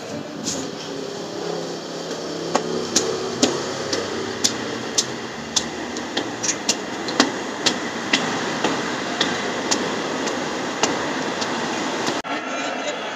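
Footsteps climbing stone stairs: sharp, regular steps about two a second, over a steady background noise.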